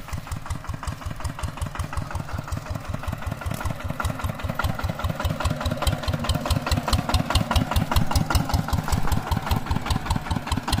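Single-cylinder diesel engine of an old Kubota two-wheel walking tractor chugging with an even beat of about five exhaust pulses a second, growing louder as it approaches.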